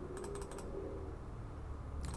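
A quick run of about five computer keyboard key clicks in the first half-second, typing digits into a calculator, over a faint steady low hum.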